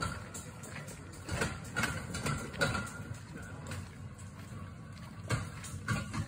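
A hand-pushed boat cart rolling on a narrow rail tramway, with a low rumble and irregular knocks, mixed with footsteps on the dirt track.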